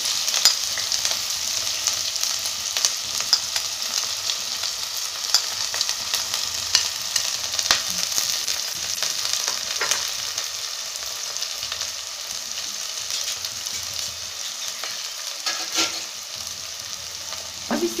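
Chopped onion, garlic, ginger and green chillies sizzling steadily in hot oil in a pressure cooker, with scattered sharp crackles and pops.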